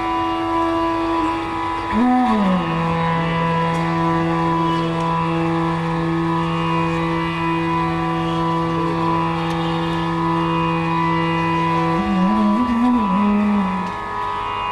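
Bansuri (Indian bamboo flute) playing a slow alap phrase of Raag Yaman Kalyan: a short rising-and-falling turn about two seconds in, then one long low note held steady for about ten seconds, breaking into an ornamented wavering phrase near the end. A steady tanpura drone sounds beneath.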